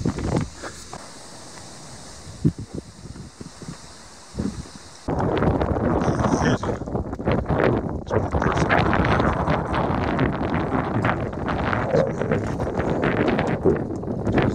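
Soft outdoor hiss with a few faint knocks. About five seconds in it gives way sharply to footsteps crunching on a loose stone path, with wind buffeting the microphone.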